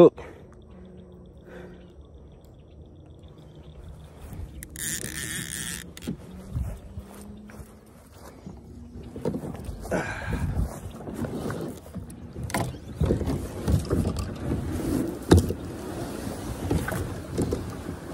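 Knocks, thumps and scraping from a plastic paddle boat's hull as it is launched into the water and boarded, coming irregularly through the second half. A brief rushing hiss comes about five seconds in.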